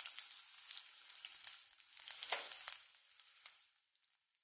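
Faint sizzling of garlic cloves, urad dal and chana dal frying in oil in a pan, with a few small crackles, dying away near the end.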